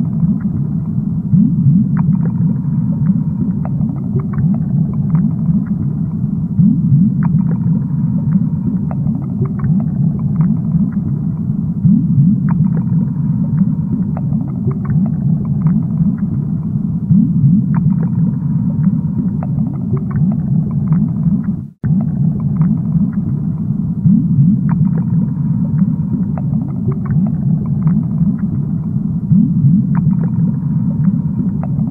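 Steady, low underwater rumble of aquarium water, with small scattered clicks and pops above it. The sound cuts out for an instant about 22 seconds in, then carries on as before.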